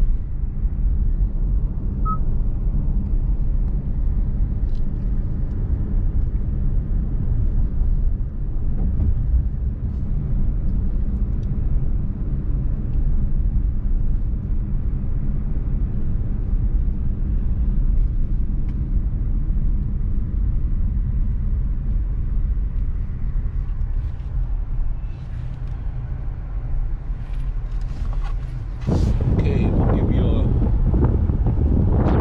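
Steady low road and engine rumble inside a moving car's cabin. About a second before the end it jumps louder, with a rush of wind noise.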